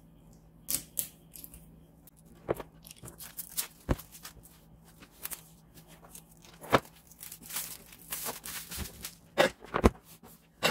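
Packaging being torn and peeled off a cardboard board game box, heard as a series of short, irregular rips and crinkles.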